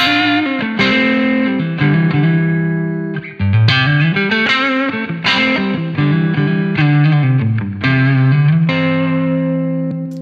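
Single-coil electric guitar playing a rhythm part of strummed chords, with a fresh chord struck about once a second and a slide near the middle. It runs through a West Co Blue Highway overdrive pedal set for light gain, giving a mildly driven tone like an amp just starting to break up rather than a fizzy one.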